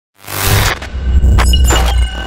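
Channel logo intro sound effects: after a moment of silence, a swell of noise rises over a deep steady bass rumble, cut by a few sharp crashing hits in the second half.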